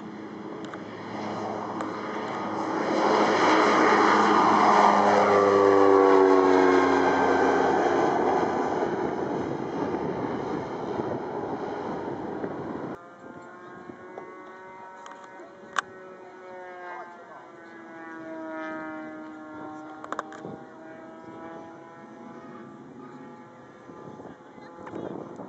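Cessna 208 Caravan single-engine turboprop taking off and passing close, its engine and propeller sound swelling to a loud peak and then dropping in pitch as it climbs away. After an abrupt cut about 13 seconds in, a fainter aircraft engine carries on with slowly gliding tones and a couple of sharp clicks.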